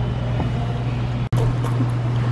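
Steady low machine hum, with the sound cutting out for an instant a little past halfway.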